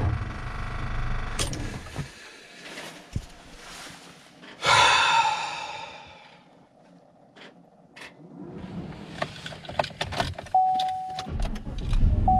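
A low rumble that fades out about two seconds in, scattered clicks and knocks, and a loud rush of noise about five seconds in that dies away. Near the end a steady electronic chime sounds, and a Chevrolet pickup's engine starts with a low rumble.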